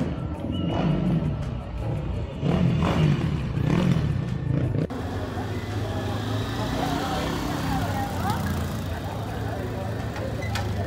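Dirt-bike engines running with rising and falling revs, loudest a little past the middle, then the chatter of a crowd over a steady engine hum.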